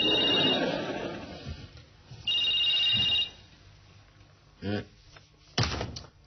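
A mobile phone ringing with a trilling two-tone electronic ring: one ring dies away early, and another lasts about a second some two seconds in. A short thump comes near the end.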